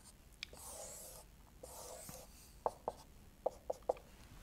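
Marker pen drawing on a whiteboard: two soft, longer strokes in the first half, then a run of short ticks as the pen touches and lifts off the board.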